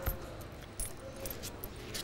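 Poker chips clicking together in scattered light clacks as a player handles and riffles his chip stack at the table.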